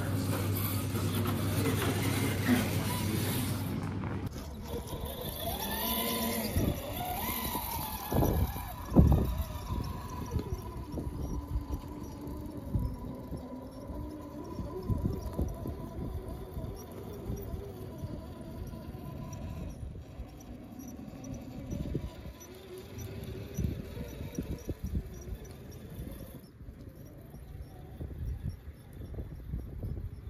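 A steady hum from a busy hall for the first four seconds. Then an RC rock crawler's Hobbywing Fusion SE brushless motor whines, rising and falling in pitch with the throttle as the truck climbs tree roots, with scattered knocks of tyres and chassis against the wood, loudest around eight to nine seconds in.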